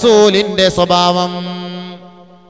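A voice chanting a melodic religious phrase over a steady low drone. The last note is held and fades away over the final second.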